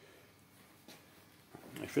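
Near silence: faint room tone with a small click about a second in, then a man starts speaking near the end.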